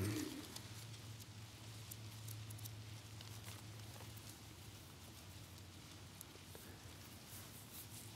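A quiet pause: a steady low hum with faint, scattered small clicks and rustles of Bible pages being turned.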